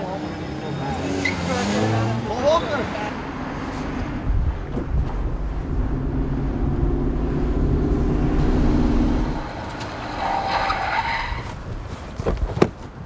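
A car engine running hard for several seconds, followed near the end by a brief tire squeal.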